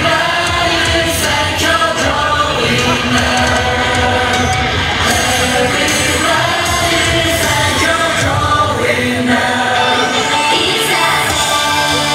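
Japanese idol pop song performed live, with female singing into a handheld microphone over a loud, steady backing track.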